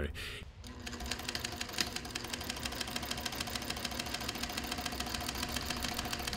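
Industrial sewing machine stitching a seam through upholstery fabric, starting about a second in and running steadily with a rapid, even ticking of the needle.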